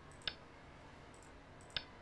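Two faint computer mouse clicks, about a second and a half apart, as moves are stepped through on a Go board program.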